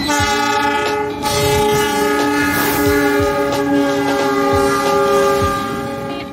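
Diesel locomotive's multi-tone air horn sounding a long blast. There is a short break about a second in, then it is held for several seconds before fading. Underneath is the rumble and thump of train wheels on the rails.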